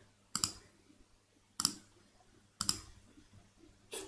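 Three sharp computer mouse clicks, about a second apart, each placing a point of a polygonal lasso selection.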